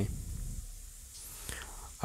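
A pause between spoken words: the end of a word fading out at the start, then only faint background hum and hiss.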